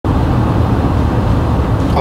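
Steady road and engine rumble heard inside a moving car's cabin.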